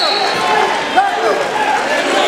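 Many voices of spectators and coaches yelling at once during a wrestling bout, with a single thud about a second in.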